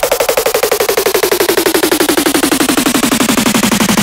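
Dubstep build-up: a rapid, machine-gun-like roll of repeated electronic hits, about a dozen a second, whose pitch slides steadily downward.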